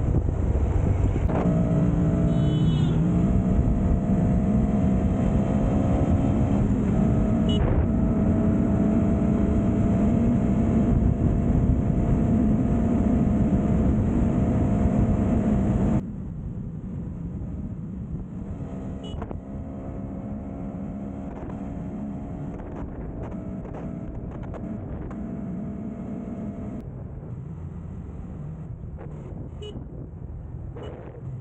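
Motorcycle engine running at road speed, its note rising and falling a little with the throttle, over heavy rushing wind and road noise. About 16 seconds in the sound cuts suddenly to a quieter level, and the engine keeps running underneath.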